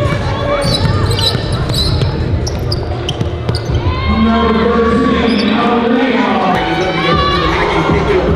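A hip-hop backing track with heavy bass and a vocal line, over game sound from a basketball court: a ball dribbling on the hardwood floor and short, high sneaker squeaks.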